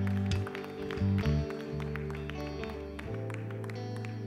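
Soft live worship band music: held keyboard chords over a slow bass line that steps to a new note a few times, with scattered light taps.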